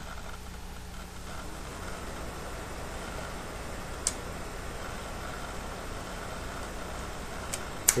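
Spring-loaded blood-glucose lancing device clicking: one sharp click about four seconds in as it is cocked, then two clicks near the end as it fires, over a steady low room hum. The lancet fails to break the skin.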